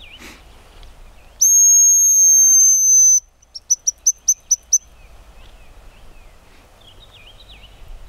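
Hazel grouse decoy whistle blown by mouth, imitating the hazel grouse's song: one long thin high whistle, then a quick run of about eight short pips. Faint songbirds chirp in the background.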